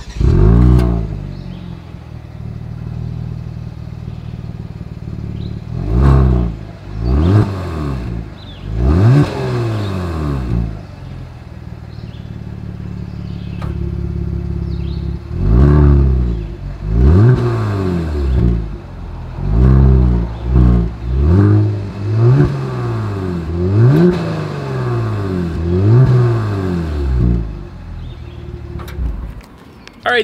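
2022 Genesis G70's 3.3-litre twin-turbo V6 exhaust, with a loud flare at the start that settles to idle. Three revs in its default drive mode are followed by a steady idle. After about fifteen seconds, in Sport mode, comes a run of about ten quick throttle blips from the dual tailpipes.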